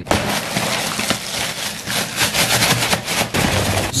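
Dense, irregular crinkling and rattling as a hand digs into a Cheerios cereal box, rustling the plastic liner and the dry cereal inside.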